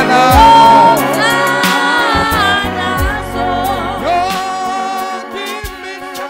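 A man singing a gospel song into a microphone, holding long notes that slide between pitches, over instrumental backing with steady low notes.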